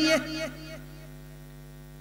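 A man's voice trails off in the first half-second, leaving a steady electrical mains hum from the microphone and amplifier system.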